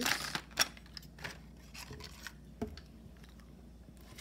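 Rustling of torn cardboard and plastic blister packaging as small plastic toy pieces are taken out, with a sharp click about half a second in and a few lighter clicks and taps over the next two seconds.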